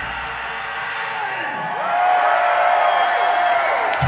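A concert crowd cheering and whooping as the metal song's loud music dies away in the first second, with one long held yell among the shouts near the middle.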